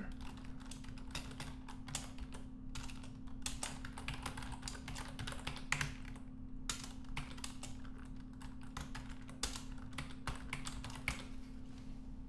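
Computer keyboard typing: irregular runs of key clicks over a low steady hum.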